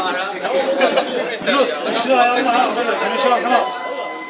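Several men's voices talking over one another in casual chatter; no drumming is heard.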